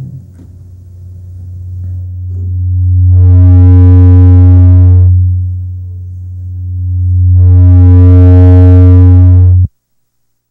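Loud electrical hum through the hall's sound system, a low buzz rich in overtones. It swells up twice and cuts off suddenly near the end.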